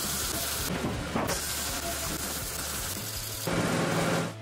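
MIG welder arc sizzling with a steady hiss, broken off briefly about a second in, over background music. Near the end a louder, fuller noise takes over.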